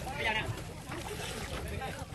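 Water sloshing and splashing as a child kicks and swims in a pool, with high-pitched voices calling in the background and wind rumbling on the microphone.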